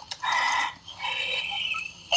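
A man's high-pitched, wheezing laugh in two drawn-out squeaky breaths, the second higher and thinner.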